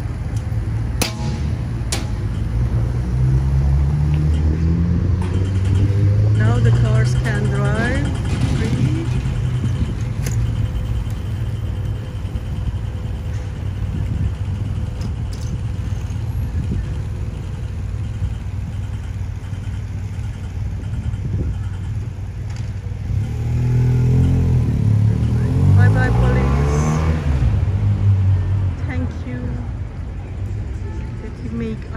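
City street traffic: cars running past and pulling away, rising in pitch as they accelerate, over a steady rumble, with voices of people nearby.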